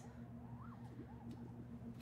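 Low room tone with a steady electrical hum, and faint short tones that rise and fall in pitch in the background.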